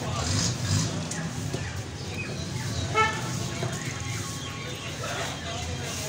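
Street background of low traffic rumble and voices, with a vehicle horn giving one short toot about three seconds in, the loudest sound.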